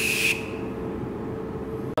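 Starbalm cold-spray aerosol can hissing in one strong burst onto bare skin, with a thin whistling tone in the hiss; the spray stops about a third of a second in.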